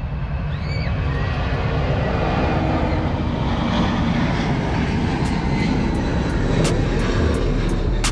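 Air Force One's Boeing VC-25A (747) taking off, its four turbofan engines at takeoff thrust giving a dense, steady low rumble that grows slightly louder toward the end. A few short clicks sound in the second half.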